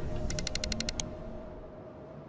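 Outro background music fading out, with a quick run of light ticks in the first second and one sharper click about a second in.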